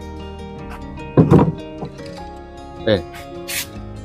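Background music with steady held tones. Over it come a short knock on a wooden beehive box about a second in and a lighter one near three seconds, as a hand handles the box.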